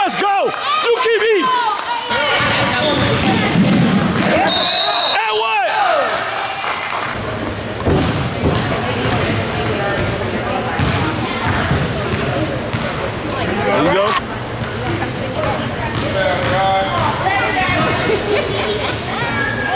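A basketball bouncing on a hardwood gym floor, with shouting voices echoing around the hall.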